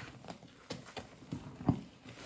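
A sponge loaded with thick foamy paste of Comet cleanser, body wash and Roma detergent squelching as gloved hands squeeze it in a plastic tub: a handful of irregular wet pops, the loudest near the end.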